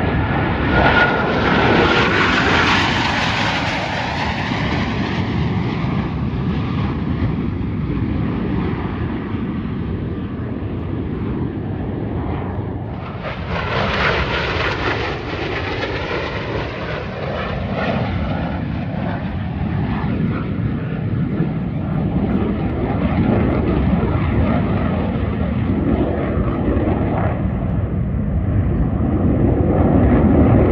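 Blue Angels F/A-18 jets roaring overhead in formation passes. The roar peaks a second or two in, swells again sharply about halfway through as another pass comes by, and a deeper rumble builds near the end.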